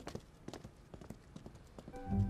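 Footsteps on a hard floor: a faint, uneven run of clicking steps as someone walks away.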